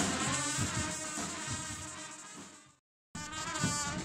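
A marching band of saxophones and trumpets plays with low drum beats, fading away until it cuts to silence about three quarters of the way through. After a brief gap the band's playing comes back in and grows louder.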